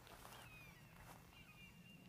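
Near silence: a quiet outdoor background with a few faint, short bird chirps.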